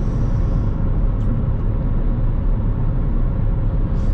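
Steady low road and engine rumble inside the cabin of a car moving at speed.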